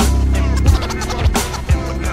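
1990s boom-bap hip hop instrumental break: a bassline and kick drum with DJ turntable scratching over the beat, no rapping.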